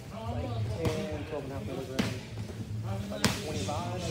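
Three sharp smacks of sparring strikes landing, gloved punches or kicks against gloves and shin guards, about a second apart, the last the loudest, over background voices in the gym.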